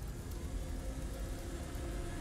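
A low, steady rumble with faint held tones above it: a tension drone in a drama soundtrack.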